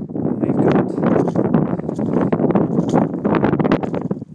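Wind buffeting a phone's microphone, loud and gusty, with rough rumbling from the phone being moved about.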